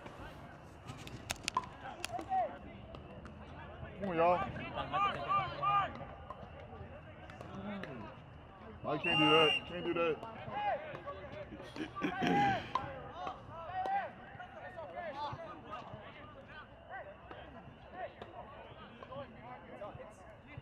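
Shouts and calls from players and spectators at an outdoor soccer game, coming in short bursts, the loudest about nine seconds in. A few sharp knocks come about a second in.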